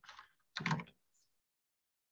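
Typing on a computer keyboard: two short bursts of keystrokes within the first second.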